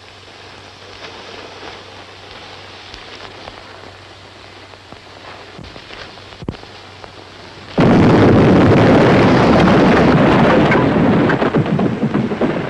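A lit fuse sizzling steadily among rocks, then a blasting charge going off about eight seconds in: a sudden, loud blast that rumbles on for about three seconds before tailing off.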